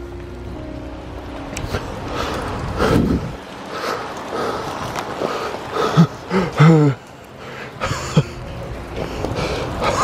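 Footsteps and rustling through wet leaf litter and brush over a steady hiss, with a few short grunts from the walker about six to seven seconds in.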